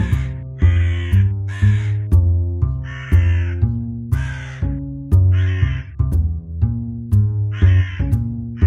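A hooded crow fledgling gives about seven harsh calls, roughly one a second, with a longer gap before the last one. Background keyboard music plays steadily underneath.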